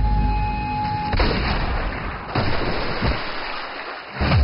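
Film-teaser sound effects: a steady high tone that cuts off about a second in, then a loud hissing rush with low rumbling hits that fades away near the end.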